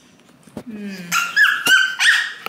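Short, high-pitched whimpering squeals with sliding pitch, beginning about a second in. Before them come a faint low murmur and a sharp click.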